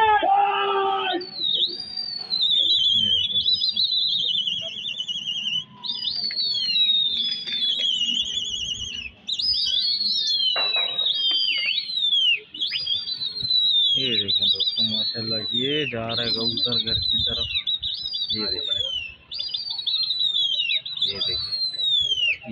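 High, shrill whistles, each rising briefly and then falling in pitch with a warble, repeated about every second or so, sometimes two at once, with men's voices calling in between.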